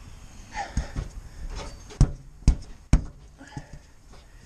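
A few sharp knocks: two weaker ones about a second in, then three loud, short ones within about a second, each dying at once without ringing.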